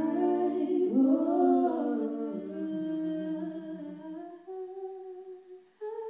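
Two women's voices singing and humming long held notes in close harmony over acoustic guitar, in a slow, soft passage whose notes die away over the last couple of seconds.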